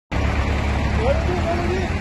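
People's voices calling out over a steady low rumble, the voices starting about a second in.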